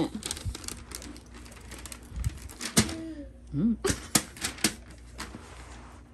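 A scattering of light clicks and taps from a toddler's hands handling a wrapped present and a plastic Christmas ornament.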